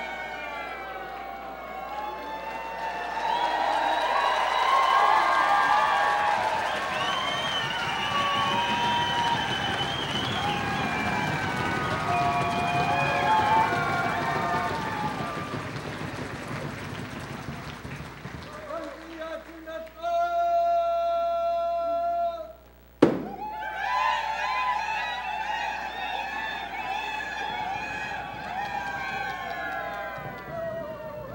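A group of voices singing and calling together, overlapping and wavering in pitch. About two-thirds of the way through, one voice holds a single long note, followed by a sharp click.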